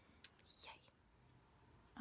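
Near silence, with one short faint click about a quarter second in and a soft breathy sound just after.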